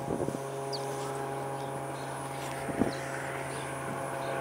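Steady drone of a distant motor, a low hum with even overtones that sets in just after the start, with a few short, faint high chirps from birds over it and one soft knock near the three-second mark.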